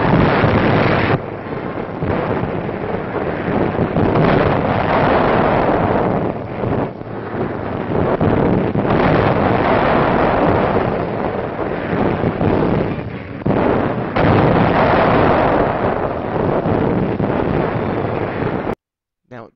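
Warship deck guns firing again and again, the blasts running together into a dense, loud din. Brief lulls come about a second, seven seconds and thirteen seconds in.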